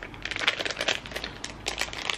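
Plastic pet-treat pouch crinkling and rustling in a hand, a dense run of quick crackles as it is handled and treats are taken out.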